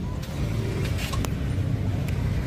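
A car engine idling steadily with a low rumble, with a few faint light clicks about a second in.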